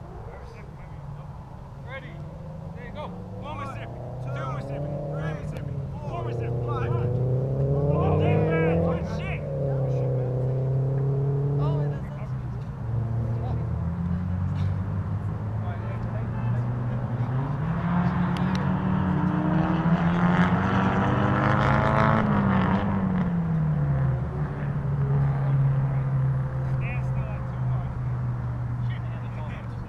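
Motor vehicle engines running steadily, their pitch rising and falling as they speed up and pass, swelling louder twice: about eight seconds in and again about twenty seconds in.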